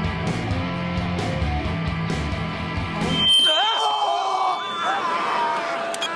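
Loud rock music playing back in a recording studio, cut off suddenly a little over three seconds in, followed by men screaming in fright, the pitch of their voices gliding up and down.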